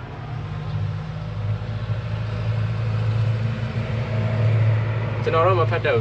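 Low, steady engine hum of a motor vehicle, gradually getting louder. A voice speaks briefly near the end.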